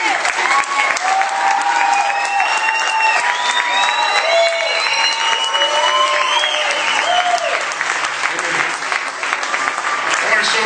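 Audience applauding, with several drawn-out cheers and whoops over the clapping from about a second in until past seven seconds.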